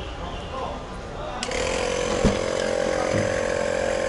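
A steady, high-pitched mechanical drone from a small motor or power tool starts suddenly about one and a half seconds in and holds on. A single sharp click, consistent with a car door latch opening, comes shortly after.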